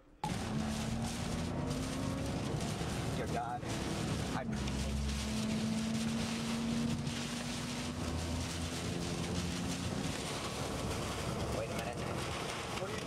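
Strong tornado wind rushing over a storm chaser's camera microphone: a loud, steady roar of noise with a low steady hum underneath.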